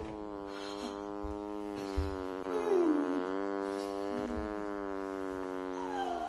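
A long, drawn-out fart, one steady buzzing tone held for about six seconds before it cuts off.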